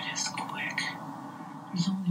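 Hushed, whispered speech over a steady background noise, with a louder low voice starting near the end.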